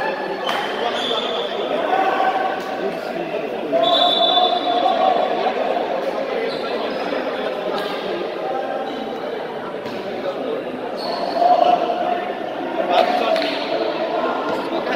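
Basketball bouncing on a hardwood-style indoor court, a few scattered bounces, under steady chatter of voices in a large echoing hall.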